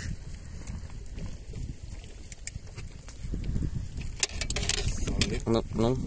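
Wind buffeting the microphone over open water, a low, uneven rumble, with a few sharp clicks and knocks in the last two seconds.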